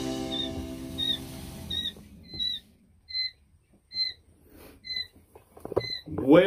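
Background music fading out over the first two seconds, then quail chicks peeping: short, high single peeps repeating a little more than once a second.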